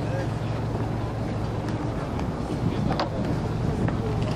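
A boat's engine running steadily, a low hum, with wind on the microphone and a brief click about three seconds in.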